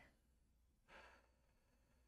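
Near silence, with one faint breath, like a short sigh, about a second in.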